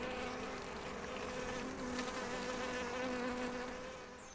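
Honeybee colony in an opened hive, humming steadily.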